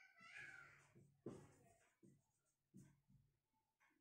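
Faint squeaks and short strokes of a marker writing on a whiteboard.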